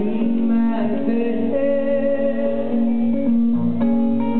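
Solo guitar played live, with low notes ringing steadily under a run of picked higher notes, and a few sharper plucks near the end.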